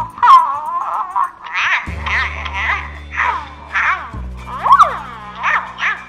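Electronic Hatchimal dragon toy chirping and squeaking in a quick string of short calls, about two a second, over background music with a low held bass note.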